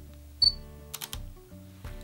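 Panasonic Lumix GX80 focus-confirmation beep: one short high beep about half a second in. The shutter fires about a second in with a few quick clicks, over background music.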